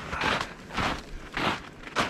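Footsteps crunching on thin, degraded snow, three steps about half a second apart.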